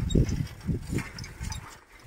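Bicycle jolting over brick paving: low, irregular bumps and rattle that die away about a second and a half in.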